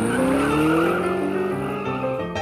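A car engine revving up, its pitch rising steadily through the two seconds, with a hiss like tyres on pavement, over light background music.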